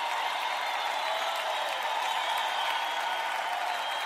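Live audience applauding steadily between songs.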